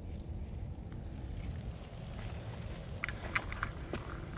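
Footsteps and light scuffs on a wet concrete path, with a few sharp ticks near the end, over a steady low rumble.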